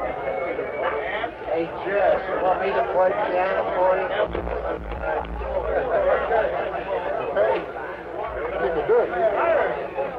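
Party guests talking over one another in a hubbub of indistinct conversation, heard dull and muffled on an old amateur tape recording.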